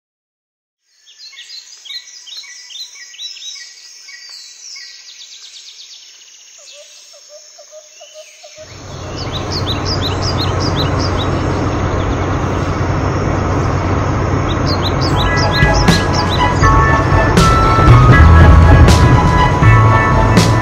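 Birds chirping in quick, high calls. About eight seconds in, a loud, steady, low rumble sets in and slowly grows, with music joining near the end.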